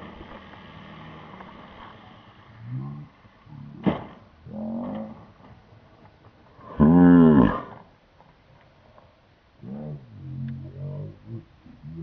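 Men's wordless groans and exclamations reacting to an RC plane crash, the loudest a long drawn-out "ohh" about seven seconds in, with a single sharp knock about four seconds in.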